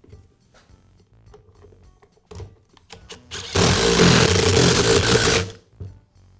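Faint clicks of plastic tool-housing parts being fitted together, then a small electric motor whirring loudly and steadily for about two seconds before cutting off suddenly.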